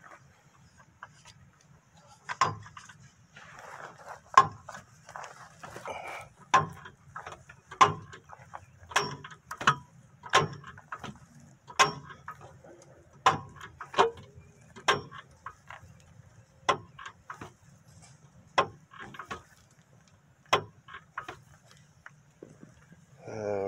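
ACDelco two-ton hydraulic floor jack being pumped by its handle while it lifts the rear axle of a truck. Each stroke gives a sharp click, about every one to two seconds.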